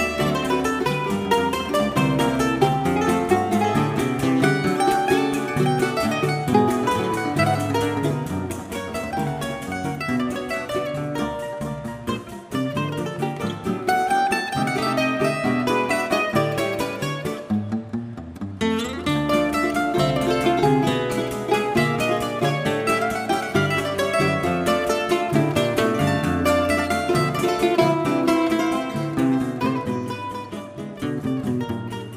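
Live choro played by a regional ensemble: a bandolim (Brazilian mandolin) and nylon-string acoustic guitars plucking a quick, continuous run of notes.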